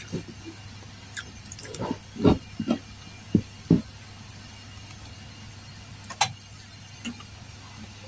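A gloved hand handling food in a ceramic bowl: a few soft, short knocks around two to four seconds in and one sharp click about six seconds in, over a steady high hiss and low hum.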